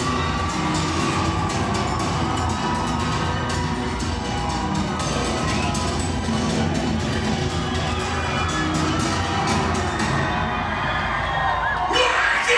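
A deathcore band playing live at high volume, with heavy bass and drums, and the crowd cheering and shouting over it, heard from within the audience.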